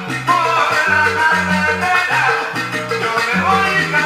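Sonora-style salsa music playing from a 45 rpm vinyl record: an instrumental stretch with no singing, the bass moving in short stepped notes under a melody line.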